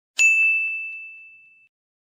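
A single bright chime, struck once, ringing on one high tone and fading out over about a second and a half.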